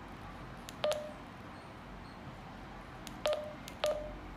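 Retevis RT3S handheld radio's keypad beeping as its buttons are pressed: three short key-confirmation beeps, each with a button click. The first comes about a second in, and two come close together near the end.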